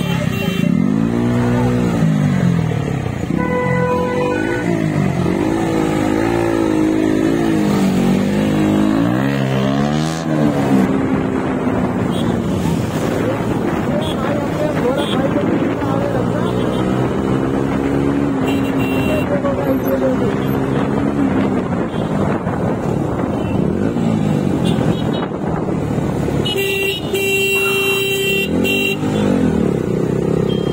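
Motorcycle engine revving up and down several times, then motorcycles running through city traffic. A vehicle horn honks for about two seconds near the end.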